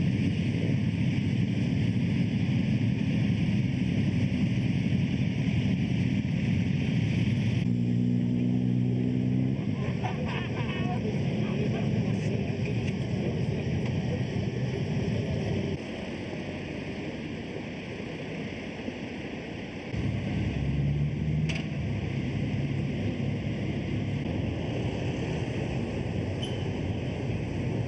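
Motorcycle engines running as bikes ride slowly past, a loud steady rumble that shifts in level a few times. A steady engine note stands out for a moment early in the second quarter, and voices are mixed in.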